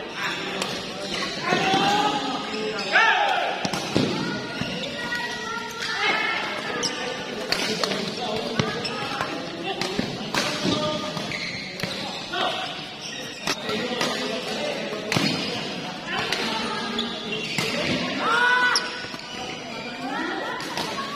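Badminton doubles rally in a large hall: rackets striking the shuttlecock again and again, with footfalls on the court and voices calling out, loudest about three seconds in and near the end.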